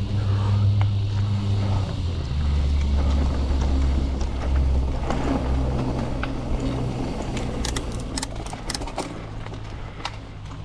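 Mountain bike rolling along a dirt singletrack: a continuous low rumble of tyres on the trail, with a quick run of sharp clicks and rattles about eight seconds in.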